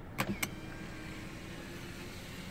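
Honda Jazz driver's power-window switch clicking twice, then the window motor running steadily as the glass lowers on its one-push auto-down.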